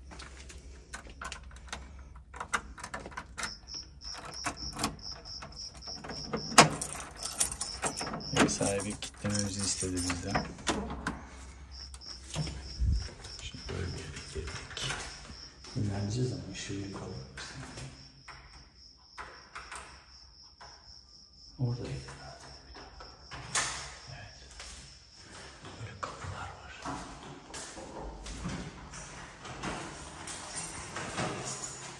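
Keys and lock cylinders clicking at a front door, then the door being opened, with a run of knocks and clicks and one loud knock about six and a half seconds in.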